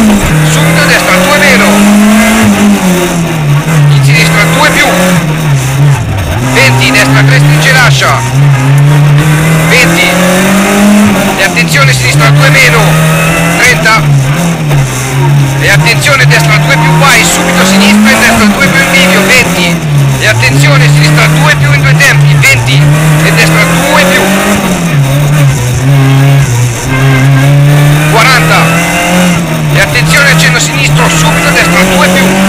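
Rally car engine heard from inside the cabin at full stage pace, its pitch climbing as it revs up and dropping back at each gear change or lift, over and over every few seconds.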